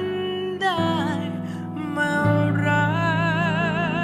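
Slow piano ballad with a male voice singing; partway through, the voice settles on a long held note with wide vibrato over sustained piano chords.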